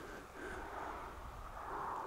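Faint, steady outdoor background noise: a low rumble with a soft hiss and no distinct events.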